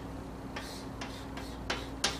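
Three short, sharp clicks or taps at uneven intervals, about half a second apart, over a steady low hum.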